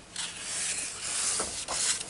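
Hands rubbing and sliding across the paper pages of an open colouring book, a soft rustle with two light knocks about a second and a half in.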